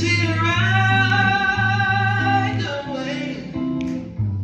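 A live jazz band with a male vocalist, electric guitar, upright bass and drums. The singer holds one long note that starts about half a second in and ends past the middle, over a steady bass line and guitar.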